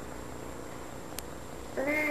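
Room hum with a small click, then near the end a toddler starts one long vocal sound held at a steady pitch.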